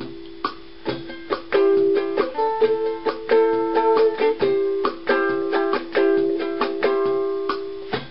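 Ukulele strumming chords in an instrumental passage, softer for the first second and a half and then fuller and rhythmic.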